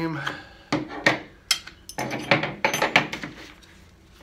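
Metal bicycle tire levers clicking and scraping against the wheel rim as a rubber tire bead is pried on, ending with a quick cluster of metallic clinks and knocks about two to three seconds in as the levers come out and are set down.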